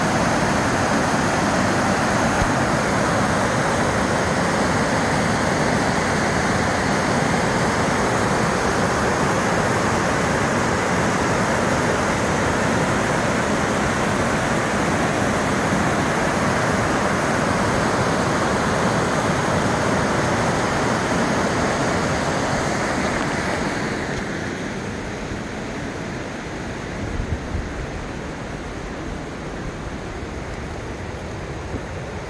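Waterfall rushing down sloping rock ledges: a loud, steady roar of water that drops in level and loses its hiss after about three-quarters of the way through.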